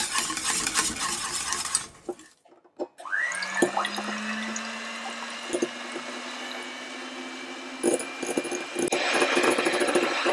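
A wire whisk scrapes briskly through thick custard in a saucepan for the first two seconds. After a short quiet gap an electric hand mixer switches on, its motor whine rising briefly to a steady pitch as the beaters whip egg whites in a glass bowl, with a few knocks of the beaters against the bowl. The whipping grows noisier near the end as the whites froth.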